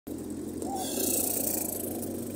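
Inside a moving car: steady engine hum and road noise, with a louder hiss about a second in.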